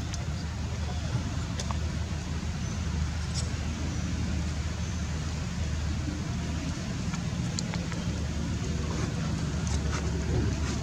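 A steady low rumble under an even hiss of background noise, with a few faint clicks scattered through it.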